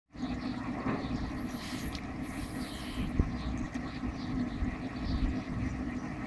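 Aeration in a fish tub: air bubbling steadily from a submerged hose, over a steady low hum.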